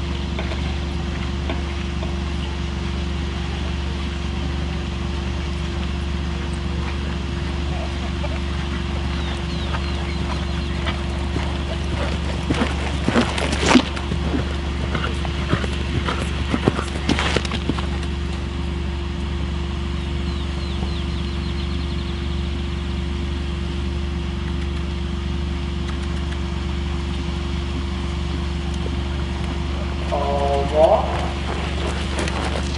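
A horse's hooves on the dirt arena, with a few clusters of close thuds in the middle as it passes near. Under them runs a steady low hum.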